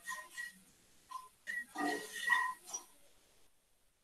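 A man's voice making a few short, quiet murmured sounds, like mumbled hesitation noises, in the first three seconds, then silence.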